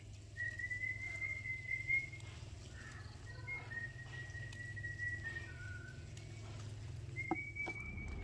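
A person whistling long, drawn-out notes that are nearly steady and high, with a slight rise: one of about two seconds, another of about two seconds, a brief lower note, then a short one near the end. A couple of faint clicks come near the end.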